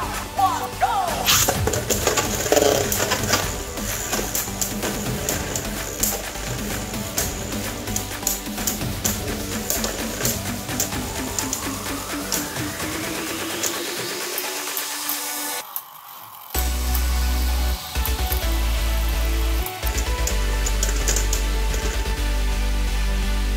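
Beyblade Burst tops spinning and colliding in a plastic stadium: a quick run of sharp clacks and rattles over background music. The clashing ends about 15 seconds in, and a steady low music tone follows.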